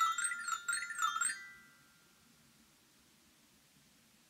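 Small xylophone struck with a mallet in a quick run of notes that zigzag up and down in pitch, stopping about a second and a half in and ringing out briefly, followed by near silence.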